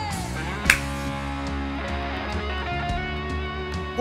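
Live band music with guitar: a sung note falls away at the start, then an instrumental stretch of sustained notes, with one sharp percussive hit under a second in.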